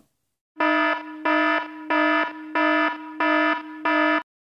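Warning alarm sound effect: a harsh, buzzy tone at one steady pitch, pulsing loud and soft about six times, starting about half a second in.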